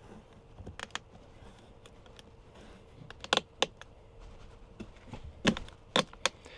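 Scattered sharp plastic clicks and snaps as a carbon fiber trim cover is pried loose from a Tesla Model Y door panel by hand: one about a second in, a quick pair a little after three seconds, and two more near the end.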